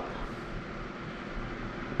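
Steady, even background hiss of room noise, with no distinct event in it.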